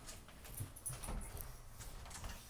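Footsteps going down carpeted stairs: a few soft, muffled thuds about half a second apart, with light clicks and rustle from the phone being carried.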